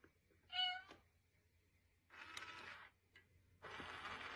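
Cat-shaped coin bank toy set off by a coin: one short, steady electronic meow about half a second in, then a soft whir of its mechanism around two seconds in and a faint click.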